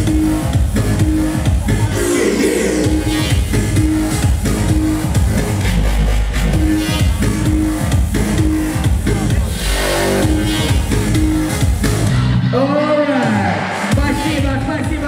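Loud electronic dance music with a steady beat and a repeating synth riff. About twelve seconds in the bass drops out and a swooping rise-and-fall in pitch plays.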